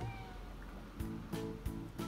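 A cat's drawn-out meow trails off with a falling pitch at the very start, then background music sets in about a second in with a steady beat of about three strikes a second.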